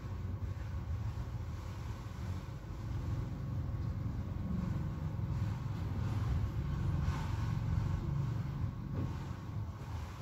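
Low, fluctuating outdoor rumble with no distinct events, swelling a little through the middle.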